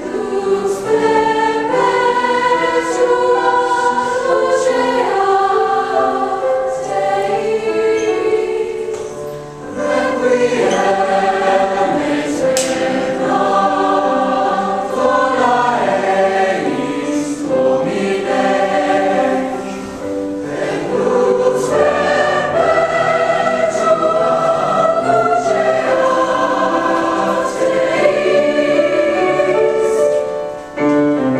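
Mixed-voice choir singing the opening movement of a Requiem Mass in several parts, with long sustained chords and brief breaths between phrases about ten and twenty seconds in.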